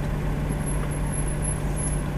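Car engine idling, heard from inside the cabin as a steady low hum and rumble.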